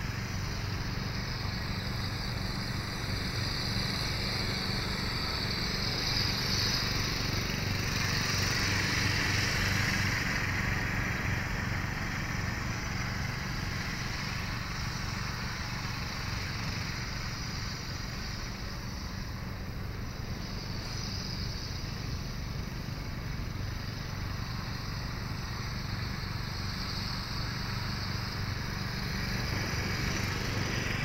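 Electric motor and propeller of an FMS Trojan 1.4 m radio-controlled model warbird in flight, a high whine that swells and fades as the plane moves around the sky, loudest about a third of the way in.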